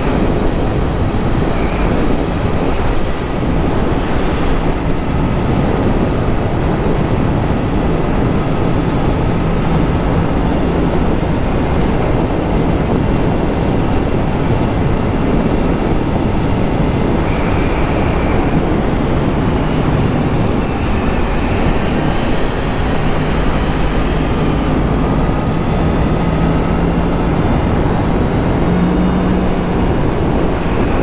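Motorcycle riding at road speed: a steady rush of wind over the microphone with the engine's note underneath, rising and falling a little as the throttle changes.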